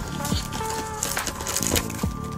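Paper rustling and tearing as a mailed envelope is ripped open, with a burst of papery hiss about halfway through, over steady background music.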